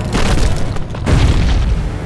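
Cartoon sound effect of a large mass of ice cracking and breaking apart: two deep booming rumbles about a second apart.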